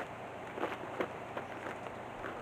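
Footsteps crunching on loose stony rubble, a few faint irregular crunches, as a stone is carried and set down.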